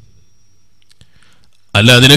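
A quiet pause of low room tone with a few faint clicks about a second in, then a man's voice starts speaking loudly near the end.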